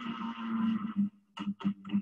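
Vibratory courtship song of a male Habronattus jumping spider, picked up from the substrate by a phonograph-needle vibration sensor and played back: a buzz lasting about a second, then a run of short pulses, about three or four a second.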